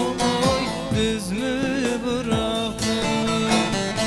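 Iraqi Turkmen folk music played on a plucked long-necked saz (bağlama), with a regular beat of low drum strokes.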